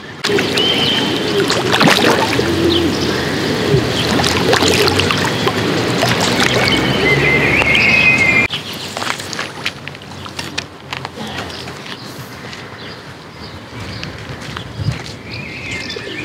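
Water splashing and churning as a hooked carp fights at the surface close to the bank, with birds chirping. About eight and a half seconds in it cuts off suddenly to quieter birdsong and occasional light clicks.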